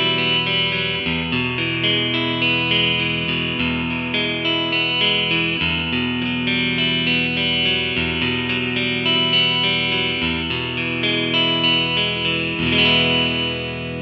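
Tagima Stella DW electric guitar played through the American Clean MK3 amp model in AmpliTube, recorded direct through an iRig Pro Duo I/O interface: a clean tone, with ringing chords and a new chord every second or two.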